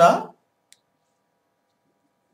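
A teacher's voice finishing a spoken Telugu phrase, then a single faint click, then near silence in a small room.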